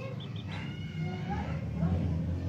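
A young chick peeping, a few short high chirps near the start, over a low rumble that gets louder from about a second in.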